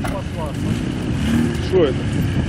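Engine of a nearby off-road vehicle running steadily: a low, even rumble. A few faint words are heard over it near the end.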